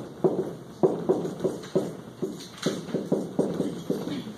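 Dry-erase marker on a whiteboard while writing: a quick run of short taps and scrapes, several a second, as each stroke and digit goes down.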